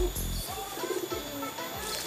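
Domestic pigeon cooing, a few soft curved calls over background music with a bass beat.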